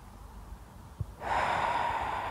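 A person's long, audible breath, starting about a second in after a faint click, taken as part of a qi gong breathing cue.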